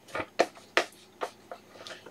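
Printed sheets of paper being handled and gathered back into a stack: about six short, sharp rustles and taps of paper.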